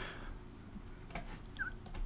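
A quiet pause: faint room tone with a couple of soft, short clicks a little past the middle.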